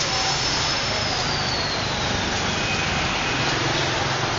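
Steady street traffic noise, with a faint high whine that slowly falls in pitch over the first couple of seconds.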